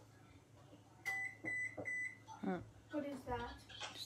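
Electronic beeper of a kitchen appliance sounding three short, high, even beeps in quick succession about a second in.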